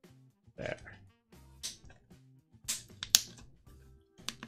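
Hands handling a clear plastic water bottle, with a few sharp plastic crackles a little under three seconds in, the loudest just after. Soft background music plays underneath.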